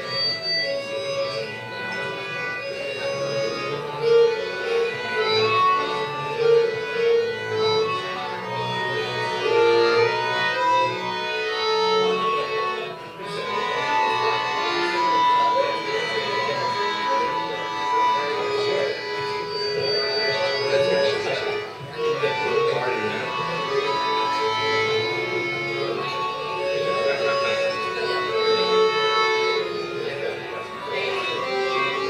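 Piano accordion playing a melody with held notes.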